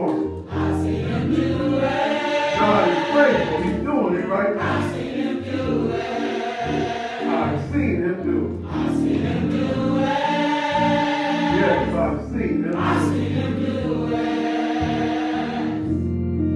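Church choir singing a gospel song together, with sustained voices over steady low keyboard notes.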